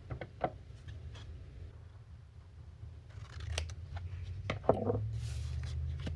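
Scissors cutting paper: a few short, sharp snips with paper being handled in between.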